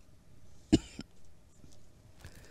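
A short cough about three quarters of a second in, with a smaller second burst just after.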